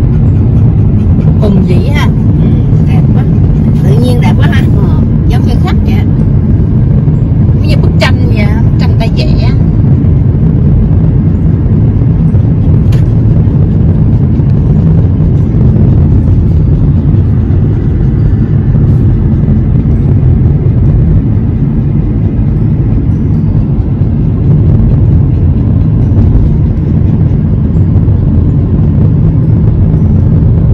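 Steady low rumble of a car driving at highway speed, heard from inside the cabin: road and engine noise with no changes in pace. Faint voices sound in the first ten seconds or so.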